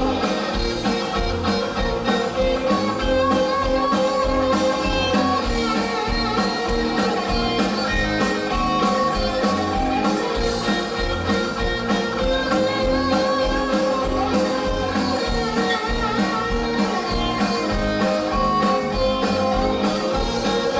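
Live rock band playing: electric guitars, bass guitar and drum kit keeping a steady beat, with a singing voice over them.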